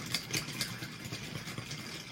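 Metal spoons stirring iced tea in tall glasses, with ice cubes and spoons clinking against the glass in a quick run of light clicks.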